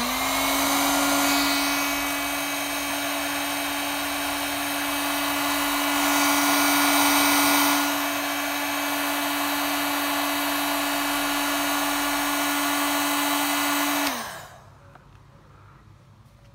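Electric heat gun running, a steady motor hum under a rush of blown air as it shrinks heat-shrink sleeving onto antenna wire. It is switched off near the end, and the motor winds down with a falling pitch.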